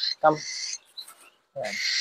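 A man calls a pet cockatiel by name once, a short low call ("Cam"). About a second in there is a brief, faint, high chirp.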